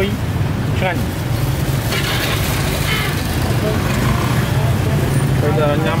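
Steady low rumble of road traffic running under the whole stretch.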